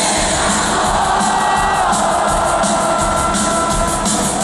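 Live pop-rock band playing through a concert PA, with drum hits and long held notes, over a cheering crowd.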